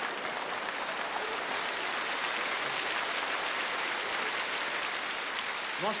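Audience applauding steadily, a dense even clatter of many hands.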